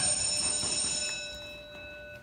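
A steady ringing tone made of several pitches at once, fading away over the first two seconds.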